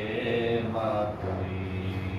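A man's voice chanting an Islamic devotional recitation through a microphone, in long, sustained, wavering melodic phrases over a steady low hum.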